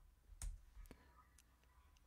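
Near silence broken by two faint clicks about half a second apart.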